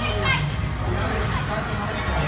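Children playing: high-pitched children's calls and chatter over a steady crowd din, with a short high cry near the start.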